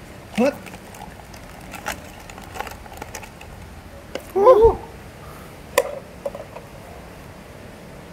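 A man's short startled exclamations: a gasp-like "헛!" about half a second in and a louder cry about halfway through. A few light clicks and taps come in between.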